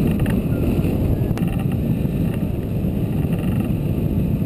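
Steady low rumble of airflow buffeting the microphone of a camera mounted on a hang glider in flight, with a few faint ticks above it.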